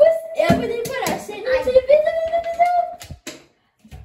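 Children singing a drawn-out tune in long held notes, at times two voices together, breaking off about three seconds in, followed by a short silence.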